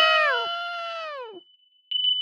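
A cartoon woman's long, high-pitched scream of pain, held steady and then falling in pitch as it fades out about a second and a half in. A short, high ringing chime follows near the end.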